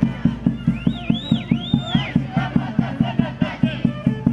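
Folk dance music with a fast, steady beat of about four beats a second. About a second in, a high whooping cry rises and falls several times, and more shouting voices follow over the music.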